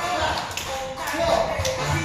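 Music with a voice over it, its heavy bass beat dropping away for a moment, while feet shuffle and tap on the studio floor as a group exercises in bungee harnesses. A few sharp taps stand out, about half a second and about a second and a half in.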